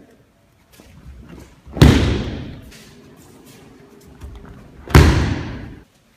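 Two breakfalls onto tatami mats, each a loud thud of a body hitting the mat, about two seconds in and again about five seconds in, each ringing briefly in the hall.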